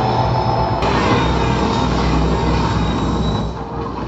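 Film soundtrack of heavy rumbling destruction with deep bass and music underneath, played loud through a JBL Bar 2.1 soundbar and its wireless subwoofer and picked up in the room. A sharp crack comes about a second in, and the rumble thins out near the end.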